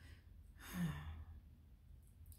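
A woman's soft sigh: a breath out swelling about half a second in, with a brief low hum of voice in it.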